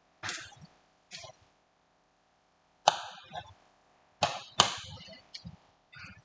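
A handful of sharp clacks and knocks from a metal turner and other kitchen utensils handled at a frying pan. The loudest come about three seconds in and twice more near four and a half seconds.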